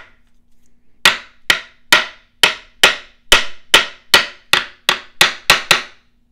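Spine-whack test of a Remette Rhinoceros button-lock folding knife: the spine of the open blade is struck hard against a wooden table about a dozen times, two to three knocks a second, after a brief pause. The button lock holds solid through the blows.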